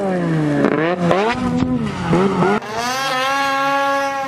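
Arctic Cat Mountain Cat 800 two-stroke snowmobile engine, fitted with a GGB Mountain Can aftermarket muffler, revving up and down in quick throttle blips. About two and a half seconds in, the sound cuts abruptly to the engine held steady at high revs.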